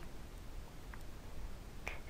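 Quiet room hiss with two faint short clicks, one about a second in and one near the end.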